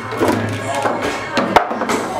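Foosball ball being struck by the table's figures and knocking against the table, a few sharp knocks with the loudest about one and a half seconds in, over background music.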